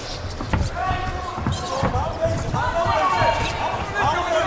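Dull thuds of punches and kicks landing in a kickboxing bout, with voices shouting in the background.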